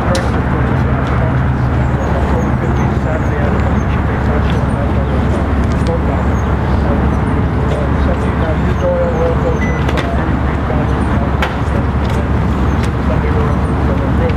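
Indistinct voices of a crowd over a steady low rumble.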